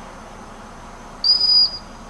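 A single short blast on a dog-training whistle: one steady, high, piercing tone of about half a second, coming about a second and a quarter in. It is the stop signal that halts a dog running out and sends it into a sit.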